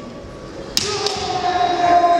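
A sharp smack of a kendo strike about three quarters of a second in, followed by a long, held kiai shout from a fighter.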